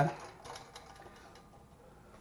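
Faint light metallic clicks from the wire outer cage of a squirrel-proof bird feeder, pressed down against its spring.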